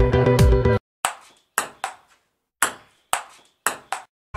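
A pop song cuts off abruptly just under a second in, followed by seven short electronic pings at uneven intervals, each sharp at first and dying away quickly.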